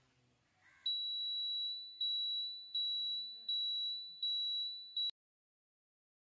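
Scooter's turn-signal beeper sounding while the indicator is switched on: a high electronic beep pulsing about every three-quarters of a second, six times, then cut off as the indicator is switched off.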